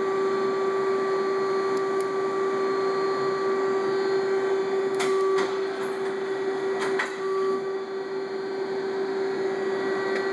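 Tsugami CNC machine running with a steady hum as its tool turret moves toward the spindle. A few sharp clicks come about five and seven seconds in.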